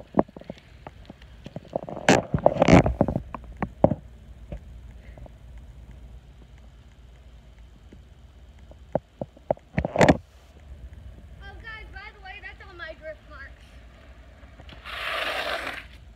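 Knocks and bumps of a handheld phone being moved, with faint voices in the middle. Near the end, a hiss lasting about a second: a bicycle's rear tyre skidding on asphalt in a drift.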